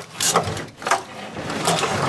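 A car's body wiring harness, a thick bundle of wires with plastic plug connectors, rustling and knocking against the sheet-metal body as it is pulled by hand through an opening, with a few sharp clicks.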